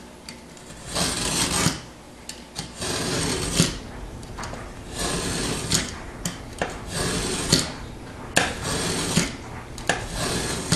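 Utility knife blade drawn along a steel straightedge, scraping into the paper and gypsum of a piece of sheetrock: about five rasping strokes, roughly one every one and a half to two seconds, several ending in a sharp tick.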